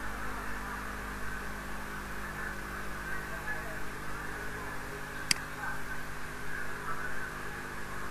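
Steady electrical mains hum with a constant background hiss from the recording setup, broken once about five seconds in by a single sharp click.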